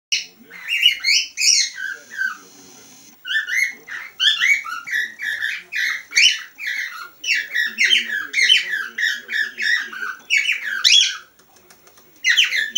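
Whiteface cockatiel whistling a fast run of short, sliding chirpy notes, with a pause of about a second around two seconds in, stopping shortly before the end.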